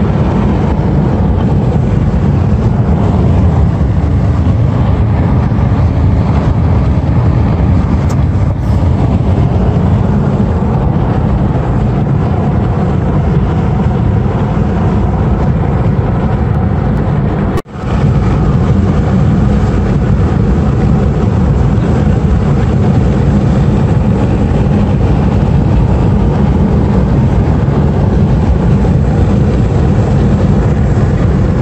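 Steady low rumble of road and engine noise inside a moving car's cabin, with a brief break in the sound about two-thirds of the way through.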